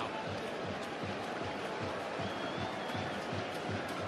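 Football stadium crowd noise: a steady din of fans in the stands, with some applause.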